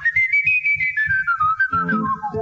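A man whistling a slow jazz melody in a single pure line that climbs to a high held note and then falls away step by step. Soft low notes from a nylon-string acoustic guitar accompany it.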